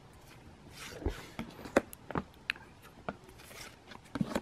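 Pokémon trading cards being handled and flipped through by hand: soft slides of card against card and a few light clicks and snaps as cards are moved from the front of the stack to the back.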